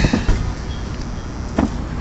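A steady low background rumble, with a short knock about one and a half seconds in.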